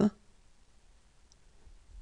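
The last instant of a voice pronouncing the letter name 'F' (èf), its final f-hiss cut short right at the start, then near silence with only faint mouth noise.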